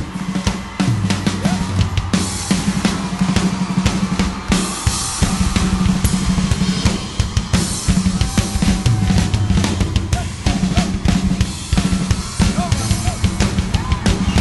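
Live rock band instrumental section with the drum kit to the fore: rapid snare, bass-drum and cymbal hits over a held low note.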